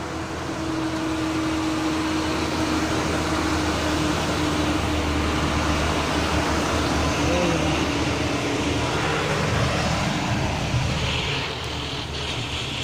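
Road traffic passing close by: a bus's engine and tyres with a steady hum, growing louder about a second in and easing off near the end.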